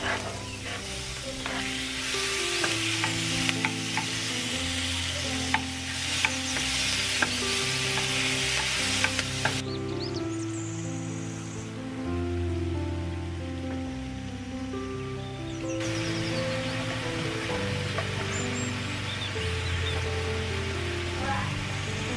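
Diced meat sizzling as it fries with onions and peppers in a nonstick frying pan, with a few clicks of a wooden spatula stirring it. The sizzle drops away for several seconds in the middle, then comes back. Background music with held notes plays throughout.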